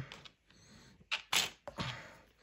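A few light clicks and rustles of small board-game pieces being picked up and put into a plastic bag, the loudest about a second and a half in.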